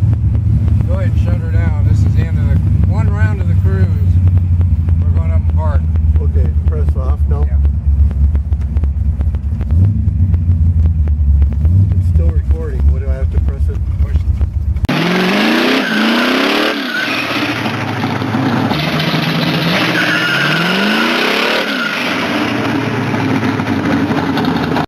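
Engine of a hot-rodded 1967 Oldsmobile convertible running with a deep, steady rumble, heard from inside the open car with voices over it. About fifteen seconds in the sound cuts abruptly to an engine revving in repeated rising sweeps over a loud hiss.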